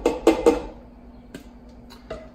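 A plastic measuring cup knocking several times in quick succession against a copper saucepan, then a couple of light clicks as it is set down on a wooden cutting board.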